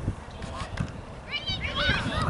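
High-pitched shouts from young voices at a soccer game, starting about a second and a half in, over a steady low rumble of outdoor field noise.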